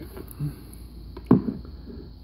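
Handling noise as a charging cable and flashlight are picked up off a kitchen countertop, with one sharp knock about a second and a half in.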